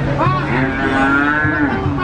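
A cow mooing: one long call of about a second and a half that rises at the start and drops away near the end.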